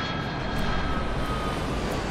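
Jet airliner engines in flight: a steady rumble with a thin high whine that slowly falls in pitch.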